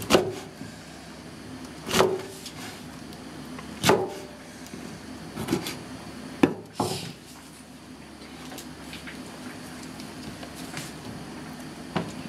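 Kitchen knife chopping through a bundle of bracken (warabi) stalks onto a wooden cutting board, one cut about every two seconds, with two quick knocks a little past the middle. The cutting stops after that.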